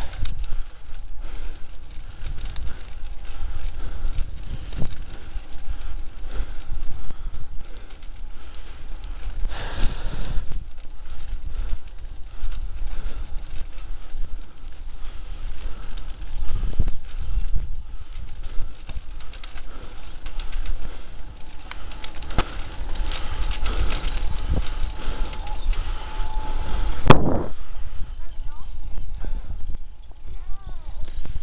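A bicycle ridden over a rough, cracked tarmac path: a continuous low rumble with frequent knocks and rattles as the bike jolts over bumps and tree roots, and one sharp, loudest jolt near the end.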